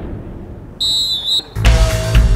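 A referee's whistle blown once, a short shrill blast of about half a second a little before halfway, signalling the kick-off. Background music with a heavy beat starts near the end.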